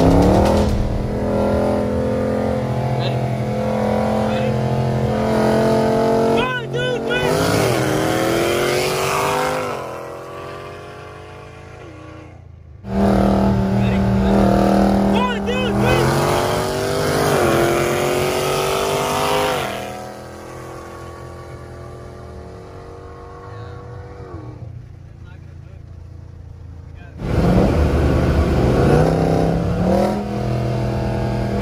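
V8 engines of street cars, one a Whipple-supercharged Dodge Charger Scat Pack, at full throttle from a rolling start. The pitch climbs through the gears, then falls and quietens as the drivers lift. A new run cuts in loudly about 13 seconds in and another near the end.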